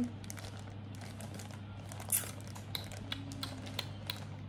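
Plastic poly mailer bag crinkling and rustling as it is handled, in scattered short crackles and clicks, over a steady low hum.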